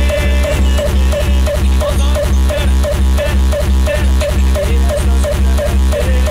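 Hardcore electronic dance track with a fast, steady kick drum, about three beats a second, and a short synth note repeating in time with it.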